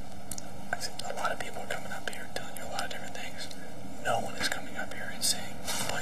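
Low, whispered speech over a steady background hiss.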